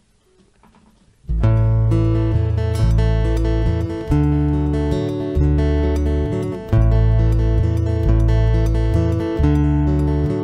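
Instrumental song intro on strummed acoustic guitar and electric bass guitar, starting about a second in after a brief quiet moment. The bass plays long low notes that change every second or so beneath the guitar.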